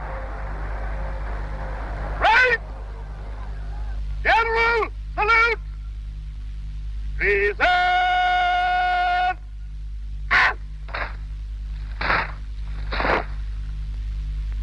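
A military officer shouting parade-ground words of command: drawn-out calls that rise and fall, one held on a steady pitch for about a second and a half, then several short sharp shouts near the end. A steady low hum of old film sound runs underneath.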